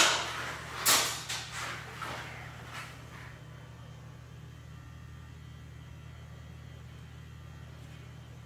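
Steady low electrical hum, with a sharp click at the very start and a few brief handling noises in the first three seconds.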